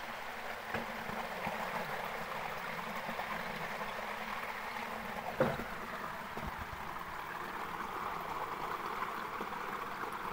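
Shallow stream water rushing steadily over and through the bamboo slats of a traditional fish trap, with a single short knock about halfway through.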